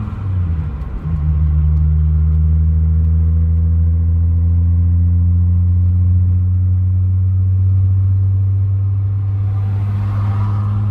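Volkswagen car's engine and road drone heard from inside the cabin while cruising on a highway. About a second in, the engine note dips briefly and settles lower, then holds steady.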